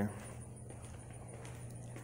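Quiet footsteps on a concrete floor, over a steady low hum.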